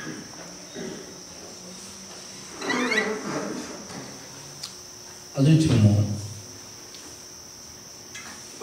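A man's voice through a microphone in a few short phrases, the loudest about five and a half seconds in, over a steady high-pitched tone that runs unbroken underneath.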